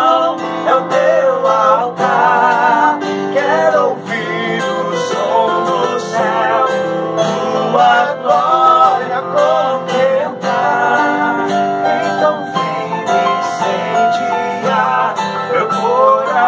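Live Portuguese worship song: two male voices singing over a strummed acoustic guitar and a Roland E-09 keyboard.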